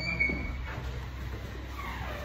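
A high, steady squeak lasting about a second at the start, then a fainter squeak near the end, over a steady low hum.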